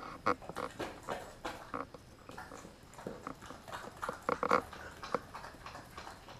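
Kelpie mix dog eating raw chicken and eggs from a stainless steel bowl: irregular wet chewing, smacking and snuffling, with a louder run of clicks a little past four seconds in.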